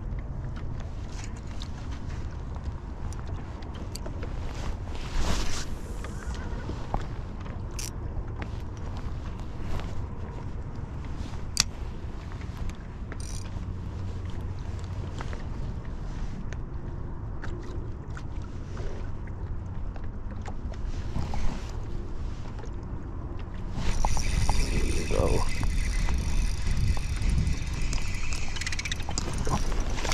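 Wind on the microphone and choppy water lapping around a small fishing boat, with scattered light clicks. Near the end a louder mechanical whirring runs for about six seconds.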